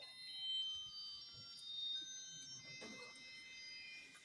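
Faint, high, chime-like tones: several notes ringing at once and overlapping, sustained over quiet hall room noise.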